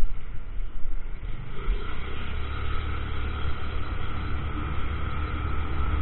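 Honda Grazia 125 scooter riding and accelerating, its single-cylinder engine running under a steady hum of road noise. The engine note fills out and holds steady from about two seconds in.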